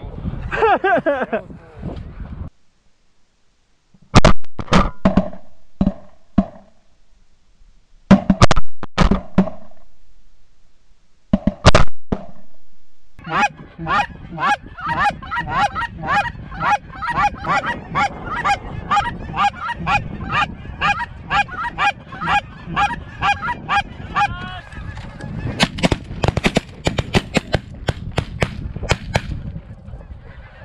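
Snow goose calling. There are a few short runs of loud, close, high-pitched calls, then after a gap a dense, rapid chatter of many calls at about four a second keeps going.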